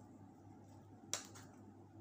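A single sharp plastic click about a second in as the lid of a small plastic sauce cup snaps open, with a few faint ticks of handling, over a steady low hum.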